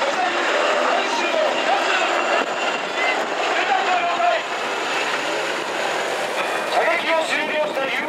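A UH-60JA helicopter flying low overhead, its rotor and turbine noise a steady rushing sound. People's voices are mixed in.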